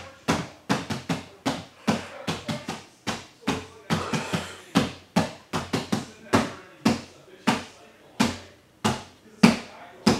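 A run of sharp knocks or thumps, about two to three a second at an uneven pace, each one dying away quickly; they come a little slower near the end.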